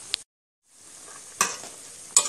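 Food sizzling as it fries in a pan, a steady high hiss, with one sharp clack of a utensil against the pan about one and a half seconds in. The hiss drops out completely for a moment just after the start.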